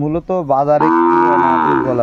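Cattle mooing: one long, drawn-out moo that starts about half a second in and runs almost to the end.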